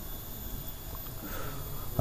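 A man's faint sniff near the microphone about a second and a half in, over quiet room hum, during a pause in reading.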